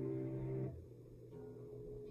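Soft background music of held chords, which fall away abruptly about two-thirds of a second in, leaving a quieter passage with one sustained note.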